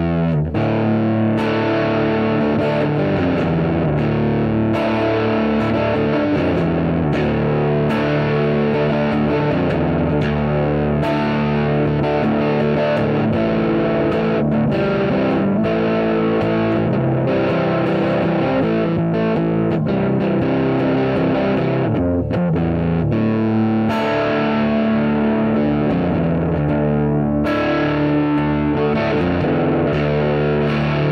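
Distorted electric guitar played through an effects unit in double drop D tuning (both E strings lowered to D), riffing continuously.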